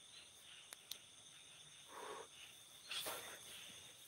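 Faint, steady high-pitched chirring of night insects such as crickets, with two small clicks a little under a second in and a couple of soft rustles later on.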